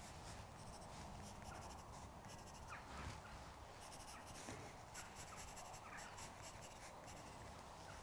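Faint scratching of a pencil on drawing paper: a run of short, light strokes.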